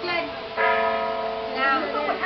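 A bell struck about half a second in, ringing on with several steady overlapping tones, with a voice sliding over it near the end.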